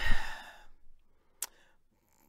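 A woman's audible breath into a close microphone, a breathy rush lasting under a second, then near silence with a single sharp click about a second and a half in.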